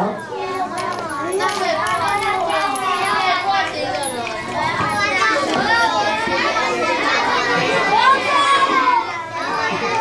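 A roomful of children talking and calling out at once: a steady hubbub of many overlapping young voices.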